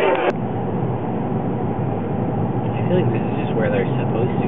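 Party chatter cut off abruptly a moment in, giving way to the steady engine and road noise of a car heard from inside the cabin, with faint voices near the end.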